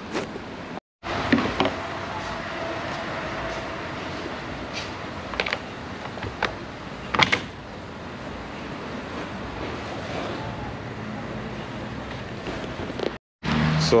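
Steady background rushing noise with a few sharp clicks and knocks, the loudest about seven seconds in, as a Kia Rio side mirror is worked loose and pulled off its mount on the door.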